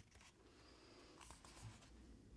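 Near silence, with a click at the very start and a few faint scratches on sketchbook paper a little over a second in.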